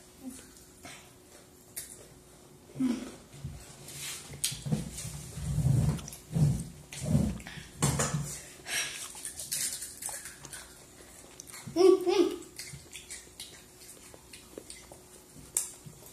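Hot Cheetos and Takis being chewed, with scattered crunches, soft murmurs, and a brief high vocal sound late on.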